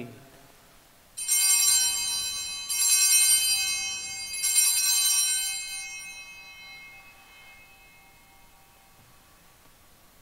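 Altar bells rung three times at the elevation of the chalice after the consecration, each ring high and bright and fading slowly, the last dying away about three seconds after it is struck.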